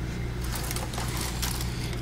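Metal jewelry clinking lightly in a wooden jewelry box as a side compartment is swung open, a few faint small clicks over a low steady hum.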